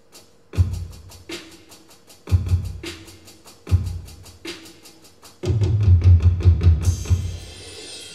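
Electronic drum pad played with the fingers: a fast, steady hi-hat tick under heavy bass-drum hits about half a second, two and a half and nearly four seconds in. Then comes a rapid run of low drum hits, ending in a cymbal crash near the end.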